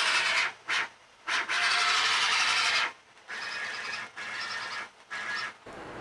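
Stepper motors of a FoxAlien CL-4x4 CNC router jogging the gantry and spindle carriage in a series of separate moves. Each move is a steady whine that starts and stops abruptly. There are short moves at first, the longest lasts about a second and a half, and the later moves are quieter.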